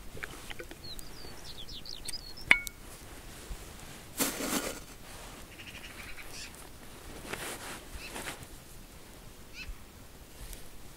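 A bird chirping a quick run of short high calls, with a sharp click about two and a half seconds in and brief rustling noises after.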